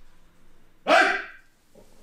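A single short, loud shouted command about a second in, the "rei!" that calls a formal kneeling bow to the shrine in a jujutsu dojo, ringing briefly in the room.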